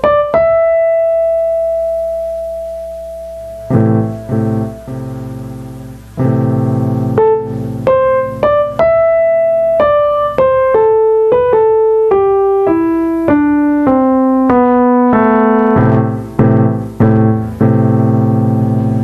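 Yamaha P-105 digital piano played with a piano voice. It opens with a single held melody note, then from about four seconds in plays chords with a bass under the melody, which steps downward through the middle.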